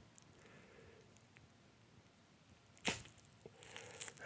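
Near silence, broken about three seconds in by one short, sharp swish: a nose-wax applicator stick being yanked out of the nostril.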